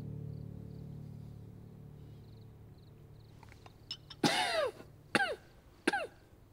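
A man coughing three times in the second half, the first cough the longest, over a low sustained music drone that fades away.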